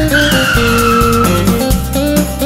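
Cartoon tyre-screech sound effect: a squeal that slides slowly down in pitch for about a second and a half as the car corners. It plays over instrumental music with a steady beat.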